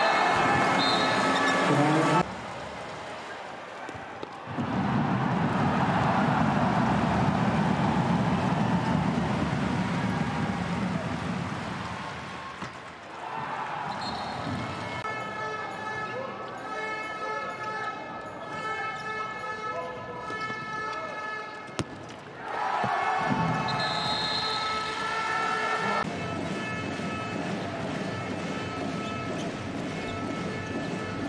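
Handball arena sound: a crowd cheering and chanting, with a voice speaking over it at times. The crowd swells loudly about five seconds in and again a little after twenty seconds.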